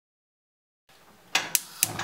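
Silence for the first half, then three sharp clicks about a second apart or less near the end: a nonstick frying pan being set and shifted on a gas stove's metal grate.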